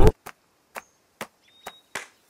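A string of about six short, sharp clicks or knocks, spaced irregularly, with a brief faint high tone near the end.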